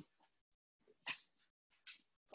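Two short, soft breaths heard through the microphone, one about a second in and a shorter one near the end, between quiet gaps.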